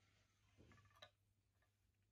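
Near silence, with a faint scrape and a single soft click about a second in, as a wooden spoon scoops custard pudding from a ceramic cup.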